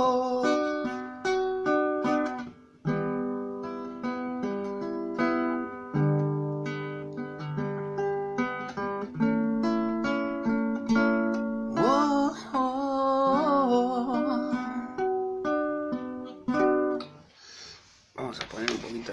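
Acoustic guitar played in an instrumental passage of plucked notes and chords, with a short sung line about twelve seconds in. The playing trails off just before the end.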